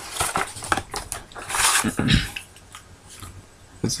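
Paper booklets and cardboard packaging being handled and pulled from a box: scattered small knocks and taps, with a longer sliding rustle of paper about one and a half seconds in.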